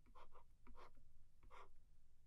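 Faint scratching of handwriting: a few short strokes as a multiplication sign and a 4 are written on the board.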